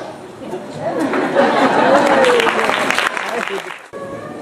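Audience in a hall clapping over a murmur of crowd chatter, rising about a second in and cutting off abruptly just before the end.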